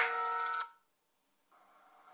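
A mobile phone's melodic ringtone sounds one last note, which cuts off abruptly under a second in as the call is answered. Near silence follows.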